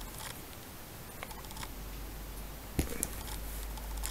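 Quiet room with faint rustling and a few soft clicks, the sharpest about three seconds in, from someone shifting in bed and handling the camera; a faint low hum comes in after about a second.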